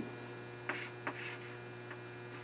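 A steady electrical mains hum, with a few short scratches of chalk on a blackboard, about a second in, as figures are written.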